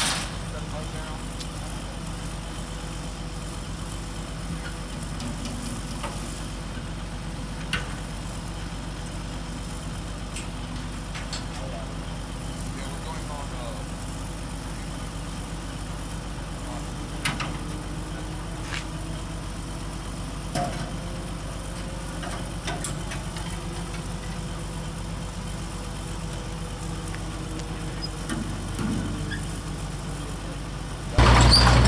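Drilling rig truck's engine idling steadily throughout, with a few short sharp knocks as the steel mud pit is set in place.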